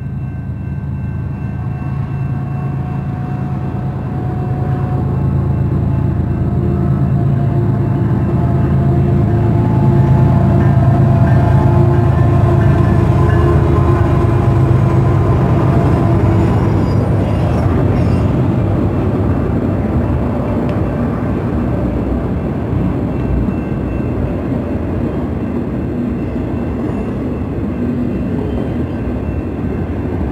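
BNSF freight train passing close by: the diesel locomotives' engines grow louder to a peak about ten seconds in, then ease into steady wheel and rail noise as the autorack cars roll past.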